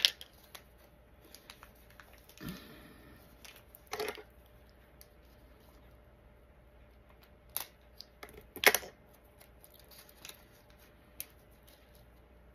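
Scattered crinkles and clicks of a small plastic jewelry bag being handled and opened, with the loudest rustle about eight and a half seconds in.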